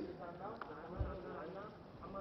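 Faint voices talking off-microphone, with a single low thump about halfway through.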